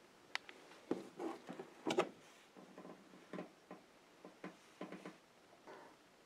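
Faint, scattered clicks and light knocks of handling, irregular and short, with nothing running.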